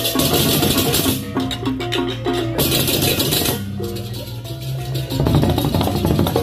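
Balinese baleganjur gamelan playing: ceng-ceng hand cymbals clash in two loud bursts, in the first second and again midway, over quick stepped gong-chime figures and the steady hum of large gongs.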